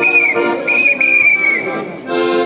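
A shrill whistle sounding three times over accordion music, each note held steady at one high pitch and dipping as it ends, the last one the longest.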